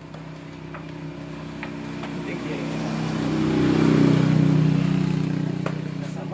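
A motor vehicle's engine passing by: its steady note grows louder, is loudest about four seconds in, then fades away. A few faint clicks sound over it.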